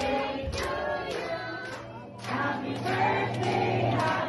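Several voices singing together over music.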